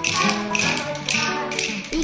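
Pair of wooden rhythm sticks tapped together in a quick, repeated beat, over background instrumental music.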